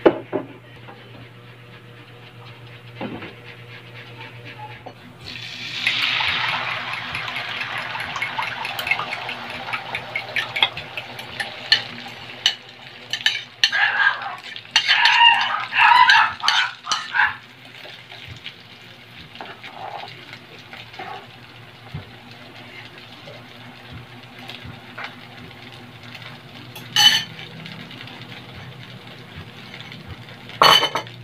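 A beaten egg and sardine mixture poured into hot oil in a frying pan, sizzling with a sudden hiss about five seconds in that fades over several seconds. Then a spoon clinking and scraping against the bowl and pan for a few seconds, with a low steady hum underneath.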